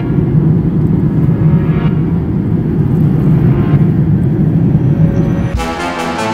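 Jet airliner cabin noise heard from a window seat in flight: a loud, steady low rumble of engines and airflow. Near the end it gives way to background music with a beat.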